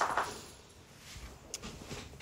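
Faint handling sounds at a craft desk, with a single light click about one and a half seconds in, as a bottle of liquid glue is picked up.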